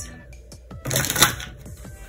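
A short rustle of tarot cards being handled or shuffled, about a second in, made up of dense dry clicks.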